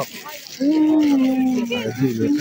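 A market vendor's long drawn-out hawking cry for cucumbers, a single held call that slowly falls in pitch, starting about half a second in.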